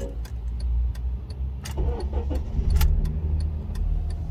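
Honda Civic's 1.8-litre R18 four-cylinder engine starting at the very beginning and then idling steadily, restarted after the car went into limp mode with a flashing check engine light. A regular light ticking runs over the idle.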